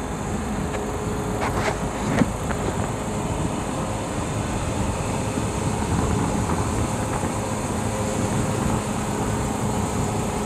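Steady low rumble of vehicle noise, with a few faint clicks and a short knock about two seconds in.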